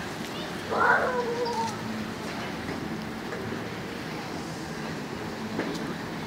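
A child's voice: one short high-pitched call about a second in, falling in pitch at its end, then only steady background noise.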